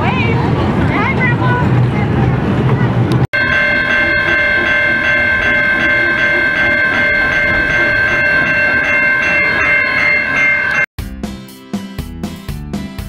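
Outdoor ride noise with voices for about three seconds. Then comes a steady whistle-like chord of several held tones from a kiddie train ride, lasting about seven seconds, with faint clicks under it. It cuts off suddenly and music starts near the end.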